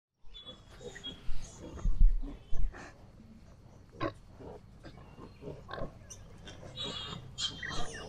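Piglets rooting and calling: short, irregular grunts, with higher squeals near the end. A few loud low thumps come in the first three seconds.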